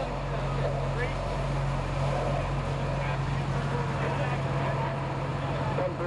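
Fire engine's engine and pump running with a steady low drone, with voices talking in the background.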